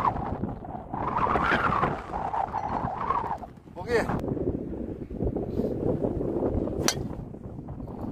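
Wind on the microphone and indistinct voices, then one sharp crack of a driver striking a golf ball off the tee about seven seconds in.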